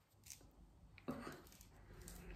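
Faint tearing and small clicks of lemon peel being pried off the fruit with fingernails.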